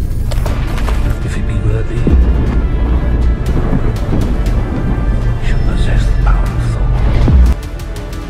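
Dramatic trailer music over a deep, loud booming rumble. Both stop abruptly about seven and a half seconds in, leaving quieter music.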